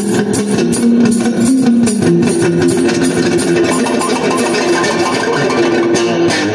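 Electric guitar, a red Stratocaster-style solid-body, played blues-style: quick picked and strummed notes with some notes held and left ringing.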